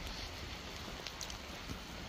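Steady hiss of rain falling on the forest, with a low rumble of wind on the microphone.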